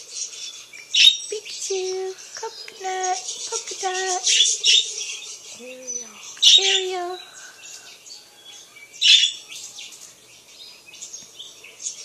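Budgerigars chirping and chattering in quick bursts, loudest about a second in, around four to five seconds, at six and a half seconds and near nine seconds.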